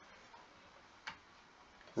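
A single short click of a computer mouse button about a second in, over faint room tone.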